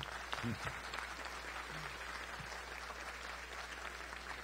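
Audience applauding: a steady spread of many hands clapping, fairly faint, with a couple of brief voices from the crowd in the first two seconds.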